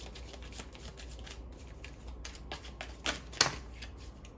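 Tarot cards being shuffled and handled, a run of short papery snaps and flicks, the loudest about three and a half seconds in.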